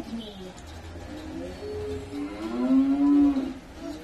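A voice humming 'mmm' with closed lips, a few short hums building to one long, louder hum near the end: the appreciative 'mmm' of tasting food.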